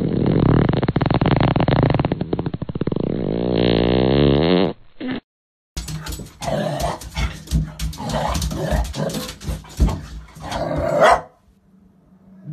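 A Boston terrier lying in a hoodie makes a long, loud, rumbling growl-like vocal sound whose pitch wavers up and down near its end. After a short break, a golden retriever puppy in a bathtub makes repeated short vocal sounds amid sharp clicks and knocks, loudest just before the end.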